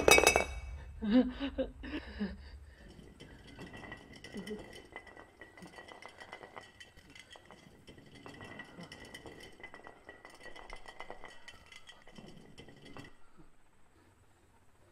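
Glass beer bottle tipping over and hitting a hard floor with a loud clink, knocking twice more about one and two seconds in. It then rolls on the floor with a faint ringing rattle that stops about a second before the end.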